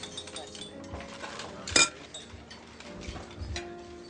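Restaurant background of low voices and faint music, with a single sharp clink of a fork against a plate a little under two seconds in.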